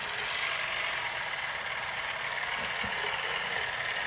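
Cordless water flosser running with its tip in the mouth: a steady, unbroken buzzing hiss of the pump and water jet.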